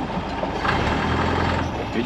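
Classic Fiat 500's engine running as the car drives, a steady low hum that swells for about a second in the middle.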